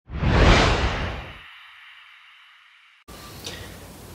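Intro whoosh sound effect: a sudden sweep that peaks within the first second and fades away with a high shimmering tail. It cuts off after about three seconds to faint room tone.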